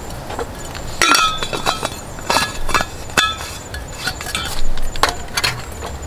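Metal clinks and knocks from handling an insulated steel vacuum flask at a camp table, its cap and body tapping and then set down. A string of sharp clicks, several with a short metallic ring, starting about a second in.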